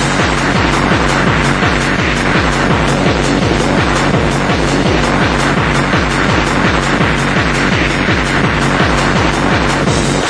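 Hardcore techno from a mid-1990s DJ mix: a fast, steady kick drum, each hit dropping in pitch, under dense, noisy synth layers.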